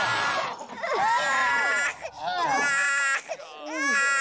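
An infant crying: a string of high, wavering cries, each about a second long, with short breaks for breath.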